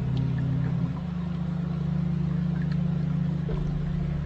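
Slow ambient meditation music carried by a loud, sustained low drone that shifts to a new note about a second in.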